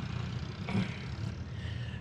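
Vehicle engine running at idle, a low steady hum, with a faint call of "bye" about a second in.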